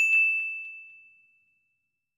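A single bright bell ding sound effect, struck right at the start and ringing out, fading away over about a second, with a few faint clicks under it as the notification bell icon is tapped.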